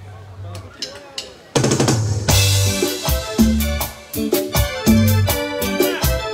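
A live band kicks off a song. A low bass note and a few stick clicks sound first. About a second and a half in there is a quick drum fill, and then the full band comes in with electric bass, drum kit and keyboard playing a steady dance rhythm.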